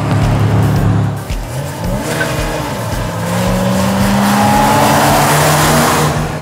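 A 1989 Dodge Dakota Shelby and a 1991 GMC Syclone pickup accelerating hard together from a standing start in a drag race. The engines run steadily for about a second, then climb in pitch as the trucks pull away, rising steadily with tyre and rushing noise building toward the end.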